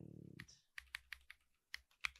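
Faint, scattered keystrokes on a computer keyboard, about six separate clicks, as text is deleted in a terminal text editor.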